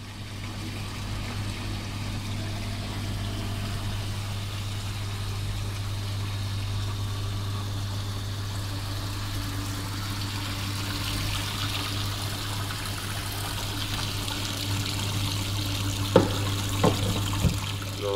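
Water pouring steadily from a hose into a hydraulic bench's volumetric tank over the steady low hum of the bench's pump. Near the end come three sharp knocks.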